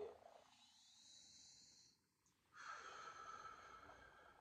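A man's faint breathing during a guided deep-breath pause: a soft breathy hiss with a brief total dropout about two seconds in, then a slightly stronger breath sound near the end.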